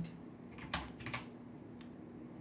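Two sharp clicks from operating a computer, about half a second apart, then a fainter click near the end, over a faint steady hum.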